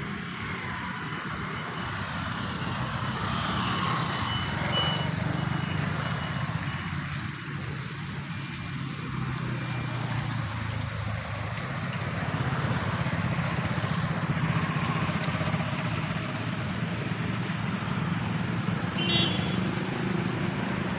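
Steady drone of road traffic: vehicle engines and tyres running on a nearby road. Near the end comes a short, rapid run of high ticks.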